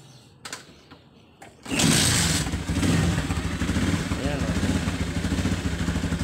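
Motorcycle kick-started from cold, catching on the first kick a little under two seconds in with a sudden loud burst. It then settles into a steady idle.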